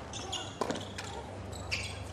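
Tennis ball struck by rackets and bouncing on a hard court during a rally, two sharp hits about half a second apart, with short high squeaks of tennis shoes on the court surface shortly after the start and again near the end.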